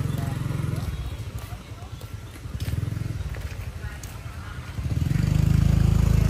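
Small motorbike engines running as they ride past, one passing close and much louder near the end.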